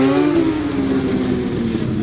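Two stunt motorcycles' engines running at low speed, their pitch sliding down in the first half second and then holding steady.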